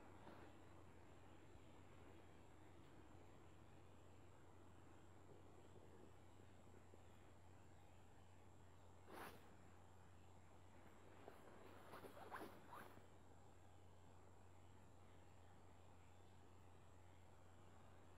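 Near silence: a steady low hum, with one faint scrape about nine seconds in and a few faint, short squeaky scrapes around twelve seconds.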